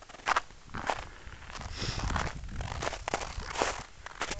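Footsteps crunching in compacted snow at a steady walking pace.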